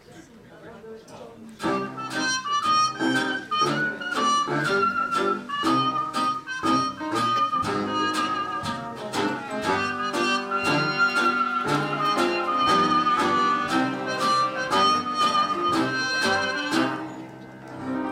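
A small 1920s-style hot jazz band starts up after a second or two of low audience chatter, clarinet, trumpet, trombone and violin over a steady beat from piano, guitar, bass saxophone and drums, playing an instrumental introduction. The band eases off about a second before the end.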